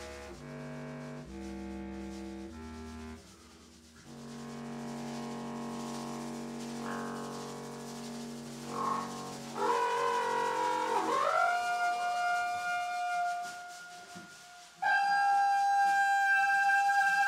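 Free-improvised wind music. A low clarinet plays short notes stepping up and down, then holds a long low note. About ten seconds in, a higher horn tone slides down into a long held note, and a second loud held tone starts suddenly near the end.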